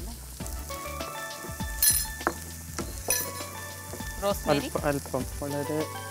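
Diced vegetables sizzling in butter and olive oil in a pan over a gas flame, stirred with a wooden spatula that scrapes the pan. There are sharp scrapes or clinks about two and three seconds in.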